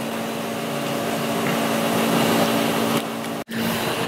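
A motor-driven shop machine running steadily: a constant hum with a rushing noise over it, which breaks off for an instant about three and a half seconds in.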